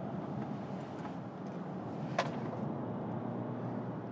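Steady road and drivetrain hum heard from inside the cabin of a Citroen C5X on the move, with a single short high chirp about halfway through.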